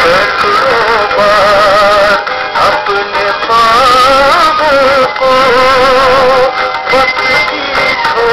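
A Hindi song playing: a voice sings a wavering, ornamented melody over instrumental backing.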